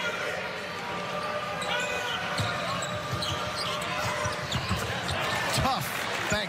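Basketball bouncing on a hardwood court, with several sharp bounces in the second half, over the steady murmur of an arena crowd.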